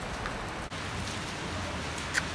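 Steady rain falling on a street, an even hiss of water with a low hum underneath.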